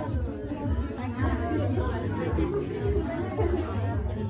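Many people chattering at once in a room, overlapping voices with no single speaker standing out.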